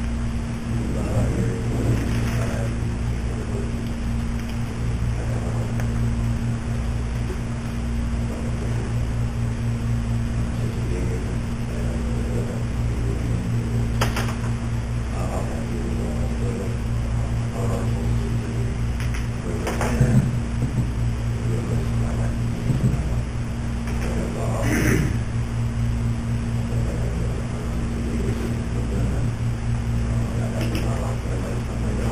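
Steady low electrical hum of a meeting room's recording, with faint indistinct voices and a few sharp clicks or knocks, the loudest about two-thirds of the way through.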